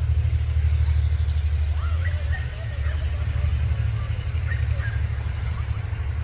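A steady low rumble, loudest in the first two seconds and easing slightly after, with a few faint short higher-pitched sounds over it.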